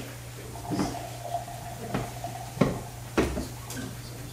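A few short knocks and clunks of something being handled, the loudest two near the end, with a faint steady tone in the middle, over a steady low hum.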